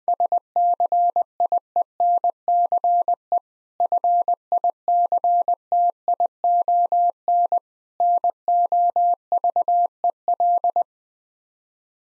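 Morse code sent at 20 words per minute as a single steady mid-pitched tone keyed in dots and dashes, spelling SCIENCE FICTION NOVEL. Two longer pauses split the three words, and the keying stops about a second before the end.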